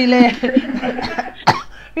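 A woman's speech, then a single short sharp sound about one and a half seconds in.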